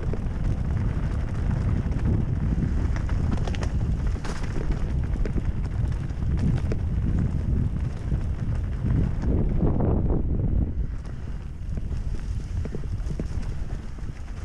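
Wind on the microphone over the crunch of tyres on loose rock and the clattering rattle of a chromoly hardtail mountain bike riding a stony trail. The noise swells just before ten seconds in and eases off a little after.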